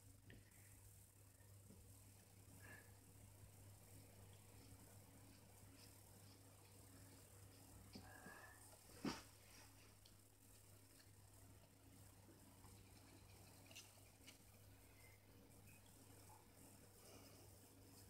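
Near silence: room tone with a low steady hum and a few faint handling sounds, and one short click about halfway through.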